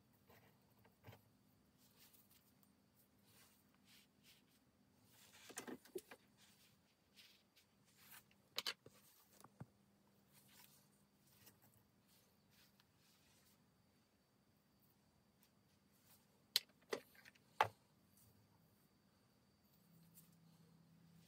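Sparse, faint clicks and clinks of small metal parts being handled and lifted off the axle of a Sturmey-Archer AG 3-speed Dynohub during disassembly, over a faint steady hum. Three sharp clicks near the end are the loudest.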